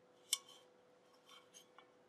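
One short sharp click about a third of a second in, then a few faint light ticks, as a metal bundt pan is handled.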